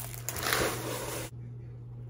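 Plastic cereal bag liner crinkling and dry Frosted Flakes pouring out of it into a plastic container. The rustle stops about a second and a half in.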